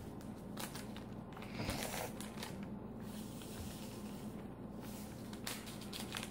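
Faint scraping and light taps of a wooden craft stick stirring wet sand and rocks in a plastic tray, a few scattered short sounds over a low room hum.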